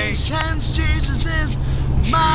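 Male a cappella quartet singing: the held chord breaks off, and a few short, quick vocal syllables fill the gap before the full chord comes back right at the end. A steady low rumble runs underneath.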